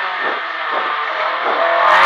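Rally car engine running on a stage at fairly steady revs, with small dips in pitch. It sounds thin, with no bass or top.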